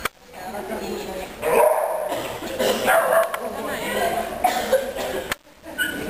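A border collie barking as it runs an agility course, mixed with a person's voice.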